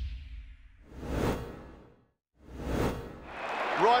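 Two whoosh sound effects, each swelling and fading, about a second and a half apart, following the fading tail of a heavy hit. Near the end the match broadcast's background noise fades in, with a man's commentary just starting.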